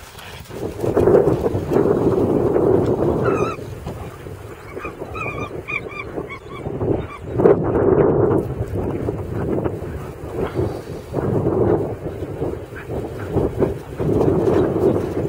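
A short series of brief pitched animal calls about three to seven seconds in, over a surging, rushing noise.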